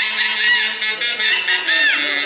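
Shrill swooping whistles, each rising and falling, several in quick succession, the kind of whistling huaylarsh dancers do while they dance. Beneath them a band plays a sustained low note.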